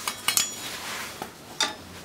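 Metal clinks and clanks as a rusty steel motorcycle luggage carrier and hand tools knock together, with a short stretch of scraping between the knocks. The carrier is having its rust and old paint taken off by hand with a wire brush and scraper.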